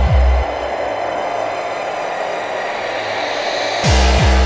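Speedcore/gabber track: distorted kick drums at about three a second, each falling in pitch, stop about half a second in, leaving about three seconds of harsh distorted noise, then the kicks come back just before the end.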